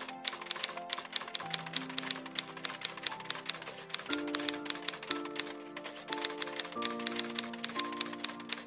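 Typewriter keystroke sound effect: rapid, uneven key clicks, several a second, over soft background music of slow held notes that change about once a second.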